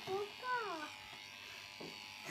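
Electric pet clippers buzzing steadily as they shave the fur from a long-haired dog's rear end.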